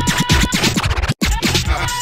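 Classic house music playing in a DJ mix, with a steady kick drum and turntable scratching over it. The music cuts out completely for an instant just over halfway through.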